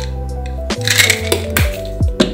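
Background music with a steady beat, over which a plastic flip-top cap on a vitamin bottle snaps with a sharp click, followed by a brief rattle.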